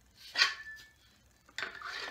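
Steel axe head knocked and scraped on a wooden handle as it is tried for fit: a sharp knock with a brief squeak after it, then a short scrape near the end.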